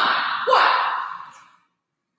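A man's breathy vocal sound, like a gasp or a hard exhale, loud at first and fading out about a second and a half in.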